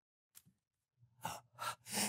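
Near silence, then three short breaths close to the microphone in the second half, the way a person breathes in just before speaking.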